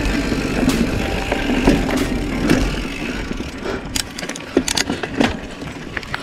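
Yeti SB95 mountain bike riding fast down a dirt trail: steady tyre and trail noise with chain and frame rattle, and a quick run of sharp clattering knocks over bumps in the last two seconds.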